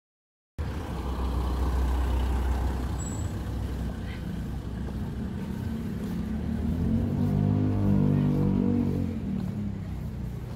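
Street traffic: a motor vehicle's engine rumbling as it passes, swelling louder and more pitched about seven seconds in, after a brief dead-silent gap at the start.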